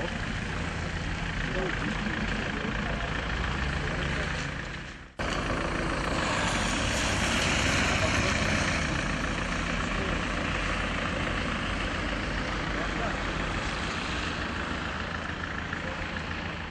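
Street traffic and vehicle noise: a steady engine drone with tyre hiss on a wet road. It breaks off abruptly about five seconds in and resumes at once, with the hiss swelling for a few seconds after.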